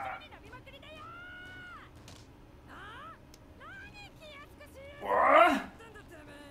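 Anime dialogue: a character's voice speaking, then a loud shouted line about five seconds in.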